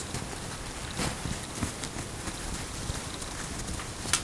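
Fabric and straight pins being handled while a cotton band is pinned to denim: soft rustling with a few light, irregular clicks and taps.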